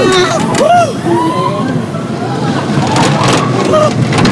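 Roller coaster riders shouting and screaming over the steady rumble of the moving coaster train.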